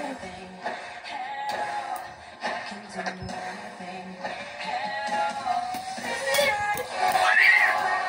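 A song with singing and backing music playing from a television's movie soundtrack, with a louder sung passage near the end.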